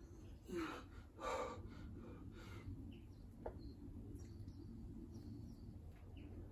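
A weightlifter breathing hard while holding a barbell overhead: two strong exhales about half a second and a second and a half in, then a softer one. Faint bird chirps and a single light click come later, over a low steady outdoor background.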